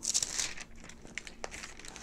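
Soft rustling and handling noise close to a clip-on microphone, strongest in the first half-second, then a few faint brief crinkles and clicks.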